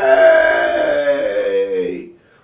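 A man's long, drawn-out howl-like wail, one sustained note that falls slowly in pitch over about two and a half seconds and fades out at the end.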